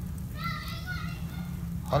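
A faint, high-pitched voice calls once in the background for under a second, over a steady low hum. A man starts speaking close up right at the end.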